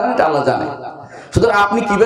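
A man lecturing in Bengali through a microphone. His voice trails off in one drawn-out falling tone, and he speaks again after a brief pause.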